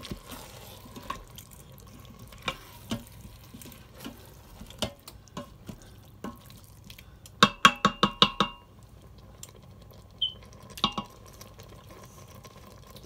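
A wooden spoon stirs a chunky, wet curry in a stainless steel pressure-cooker pot, with occasional knocks against the pot. About two thirds of the way through, a quick run of about eight knocks leaves the steel pot briefly ringing.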